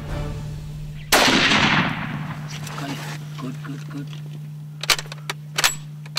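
A single hunting rifle shot about a second in, sudden and loud, its report and echo dying away over about a second. A few sharp clicks follow near the end.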